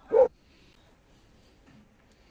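A single short dog bark right at the start, followed by faint background noise.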